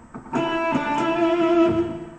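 Electric guitar playing a short phrase of picked single notes, starting about a third of a second in and ending on a held note that fades out near the end.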